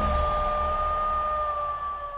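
Closing logo music sting: one long held tone over a low rumble, fading toward the end.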